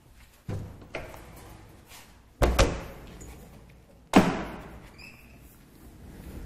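Metal doors of a meal-delivery trolley being swung shut: a couple of light knocks, then two loud slams, one about two and a half seconds in and one just after four seconds.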